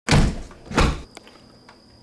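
Two heavy thuds close together, camera handling as the camera is set in place, followed by faint room tone with a few light ticks.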